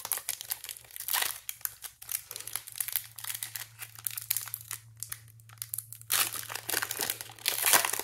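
Foil wrapper of a Pokémon TCG booster pack being handled and torn open, crinkling and crackling in quick bursts, loudest over the last two seconds as the wrapper is pulled apart and the cards come out.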